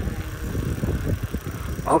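Bicycle riding along a wet paved road: a steady low rumble of tyres on the pavement and wind on the microphone as the bike moves. A voice says "Oh" at the very end.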